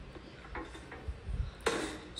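Faint low bumps of handling, then a single short clack near the end as a countertop toaster oven is closed up.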